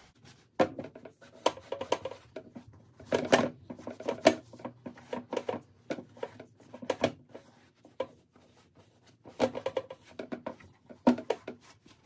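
A cloth rubbing over the leather upper of a Red Wing Silversmith boot in quick, irregular wiping strokes, with light knocks and scuffs as the boot is turned and handled.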